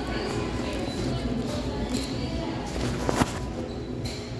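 Café background: music playing with low voices murmuring.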